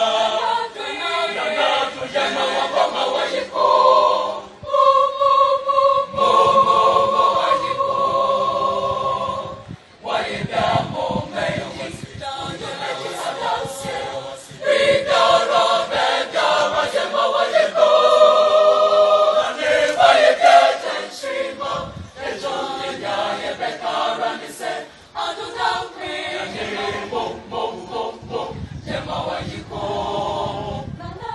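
Senior high school student choir singing a choral praise song in phrases, with a long held chord about five seconds in and short breaks between phrases.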